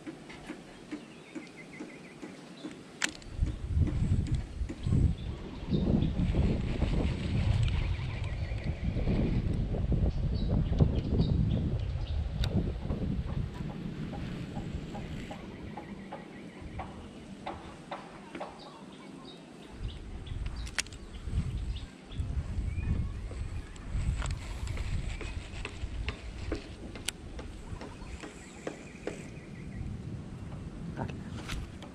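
Gusty wind buffeting an action camera's microphone in uneven rumbling gusts, with a few sharp clicks scattered through it.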